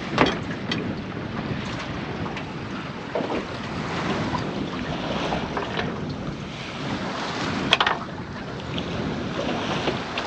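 Wind buffeting the microphone and water lapping against an aluminium dinghy's hull beside a floating pontoon, with a few sharp clicks and knocks as a tie-down strap and its buckle are handled; the loudest click comes about three quarters of the way through.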